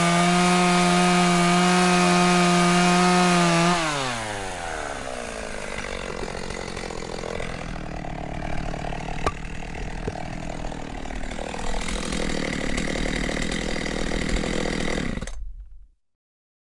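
Stihl chainsaw running at full throttle, then its pitch drops as the throttle is released about four seconds in. A quieter, uneven running sound follows and cuts off suddenly near the end.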